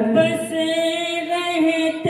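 A man's voice singing a naat, unaccompanied, into a microphone, drawing out long held notes.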